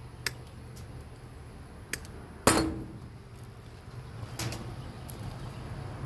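Light clicks and knocks of pliers and other hand tools handled on a tabletop, the loudest a sharp knock with a short ring about two and a half seconds in.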